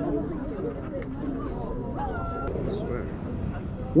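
Indistinct talking by other people, quieter than the angler's own voice, over a steady low background rumble.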